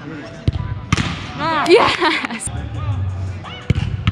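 Soccer ball kicked in a large indoor sports dome, a sharp thud about half a second in and another near the end. Between the kicks people shout and cheer, loudest around the middle.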